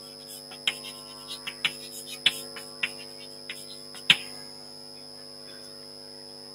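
Chalk tapping and clicking on a blackboard as words are written: about a dozen short sharp taps, the loudest about four seconds in, after which they stop. A steady electrical hum runs underneath.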